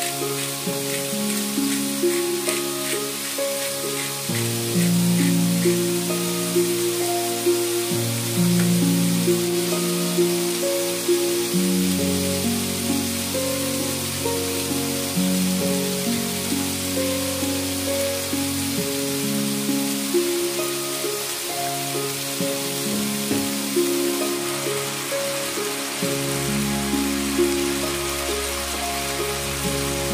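Background music with long held notes and chords, over a steady sizzle of chicken and vegetables frying in a wok.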